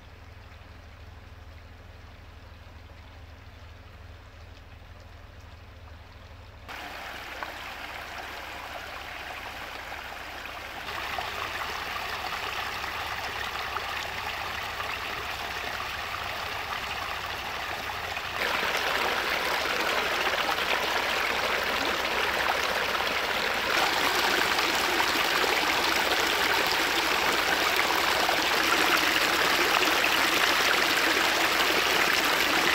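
Shallow brook water running over stones and a small cascade, trickling and babbling. It grows louder in four sudden steps, from a soft trickle to fast rushing water.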